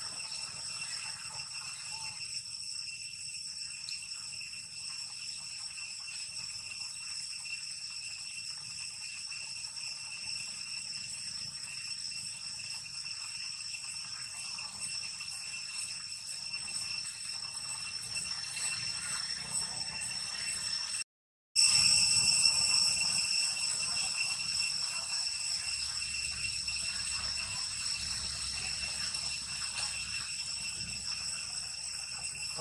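Steady, high-pitched insect drone made of several held tones at once. It cuts out for about half a second about two-thirds of the way in, then comes back louder.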